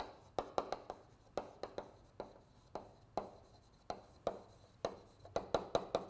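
Chalk writing on a blackboard: an uneven run of sharp taps and short strokes, about four a second, as words are written out.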